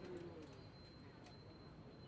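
Faint street-stall ambience, close to silence: a few distant voices briefly at the start, then a steady low background hum.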